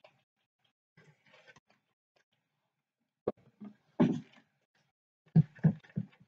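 Clear stamps being wiped clean with a cloth on a craft desk: faint rubbing and handling noises with stretches of near silence between. There is a sharp click a little over three seconds in, a louder bump about a second later, and a few short knocks near the end.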